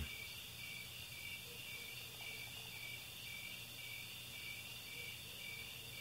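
Faint crickets chirping in a steady high trill that pulses about twice a second, over a low steady hum.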